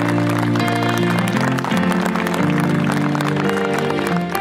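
Music with held, low chords, over a crowd's applause.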